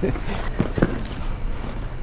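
Crickets chirping in a rapid, steady, even pulse, with a few faint short knocks or rustles about halfway through.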